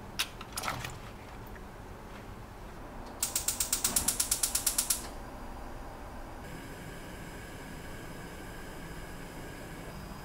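Gas stove's spark igniter clicking rapidly for about two seconds as the burner knob is turned, then the lit burner's faint, steady gas hiss. A couple of light knocks come in the first second.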